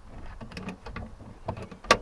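Light clicks and rattles from a 2010 Jeep Liberty's rear swing gate, carrying the spare tire, as it is worked by hand, then one sharp knock near the end. The gate moves only a little because the spare tire fouls the trailer hitch.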